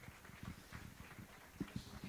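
A few faint, low thumps of footsteps as a man walks across the stage floor, over quiet room tone.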